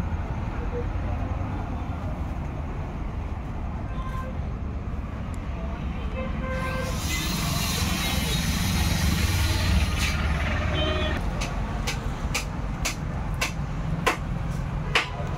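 Steady low background rumble of road traffic, with a few short horn toots. A hiss comes in for about four seconds in the middle, and a series of sharp clicks follows near the end.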